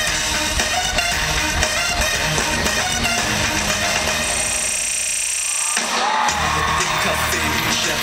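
Live band and backing track playing an instrumental dance break over an arena PA, heard from within the crowd. About four seconds in the bass drops out under a high, filtered sweep, and the full beat comes back in just before six seconds.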